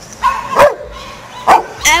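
A dog barking twice, two short loud barks about a second apart.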